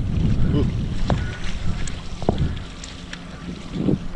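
Wind buffeting the microphone of a camera carried on a moving foil board at sea, a low rumble that eases off about halfway through.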